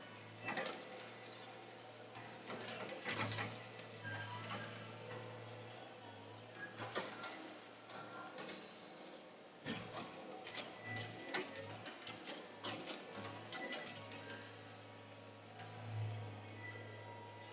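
Low hum of a log loader's engine and hydraulics heard from inside the caged cab, swelling and dropping as it works. Scattered clicks and knocks come through as pine logs are grabbed and swung.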